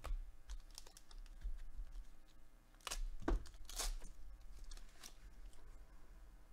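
Trading cards being handled and flipped with gloved hands: scattered light clicks and rustles of card stock, with a short cluster of louder snaps and scrapes about halfway through.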